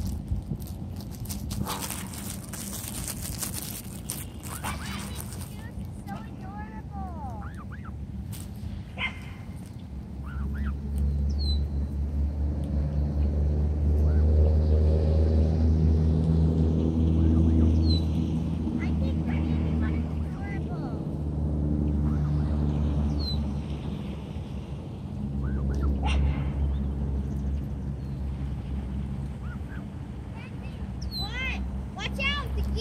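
Short, high rising peeps from a Canada goose gosling, heard now and then, over a steady low drone. The drone swells up from about a third of the way in and fades near the end, and is the loudest sound. Early on there is a rushing noise on the microphone.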